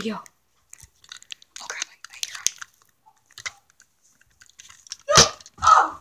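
Handling noise from an airsoft gun with a phone mounted on it as it is moved about: scattered rustles and small clicks, then two louder thumps near the end.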